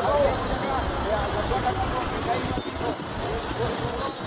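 Several bystanders talking at once, with a steady low rumble underneath.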